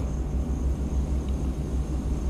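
A steady low hum and rumble of background noise, with a faint thin high whine above it.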